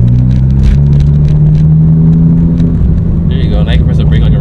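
Ford Focus ST's turbocharged four-cylinder engine heard from inside the cabin, running at low revs with a steady drone as the car creeps along under light throttle with a learner driving. The pitch rises a little about half a second in and then holds.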